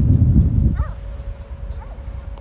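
Wind buffeting the microphone as a low rumble that drops away about a third of the way in, leaving a quieter stretch with a faint, brief distant call.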